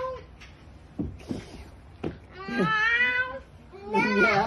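A young girl imitating a cat: one drawn-out meow, rising then held, about two and a half seconds in, after two soft knocks.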